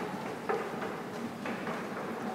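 A few sharp knocks over a steady background noise, one near the start and others about half a second and a second and a half in.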